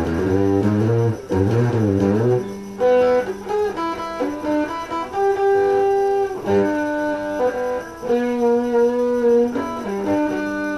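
Dean Vendetta 1.0 electric guitar played through a Crate GX-15 practice amp: a couple of seconds of chords that waver in pitch, then a slow line of single held notes.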